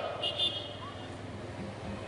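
A pause in loudspeaker-amplified speech: the man's voice dies away in a short echo, leaving a low steady background hum and hiss, with a brief faint high tone early on.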